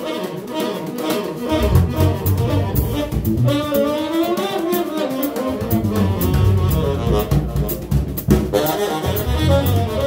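Live small-group jazz: a tenor saxophone playing a melody line over electric guitar, electric bass and ride cymbals. The low bass drops out briefly near the start and again for a couple of seconds in the middle while the saxophone line comes in.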